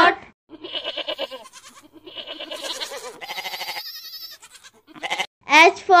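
Goat bleating: several quavering bleats in a row over about four seconds.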